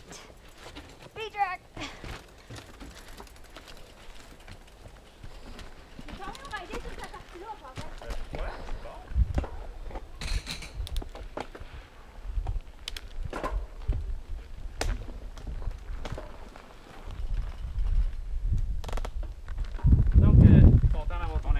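Mountain bike ridden down a rough dirt trail, heard from a helmet-mounted camera: quieter at first, then from about eight seconds a low rumble from the tyres with scattered knocks and rattles as the bike goes over rocks and roots.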